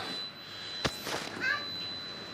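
A Rivacold refrigeration unit on a cold-storage container running with a steady, even hum and hiss, its compressors working again after an unexplained shutdown. A single sharp click comes a little under a second in.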